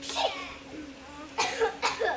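A person coughing: one cough just after the start, then a quick run of coughs in the second half.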